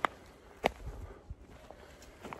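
A hiker's footsteps on a leaf-littered forest trail: two distinct steps about two-thirds of a second apart, with faint rustling between.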